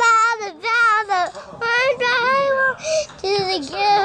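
A young child singing in a high, wavering voice, holding a few long notes with short breaks between them.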